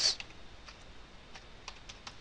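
Computer keyboard being typed: a handful of light, irregularly spaced key clicks.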